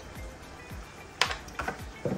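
Soft background music with a low, regular beat. About a second in there is a sharp click, with a lighter one shortly after, from the plastic spice containers being handled.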